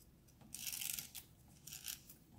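Plastic film holder carrying an APS negative strip pushed by hand through the slot of a small film scanner: two short scraping rasps, the first longer, about a second apart.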